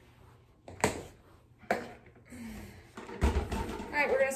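Handling noise: two sharp clicks or knocks about a second apart, then a low thump with a rustle near the end; no cleaner motor running.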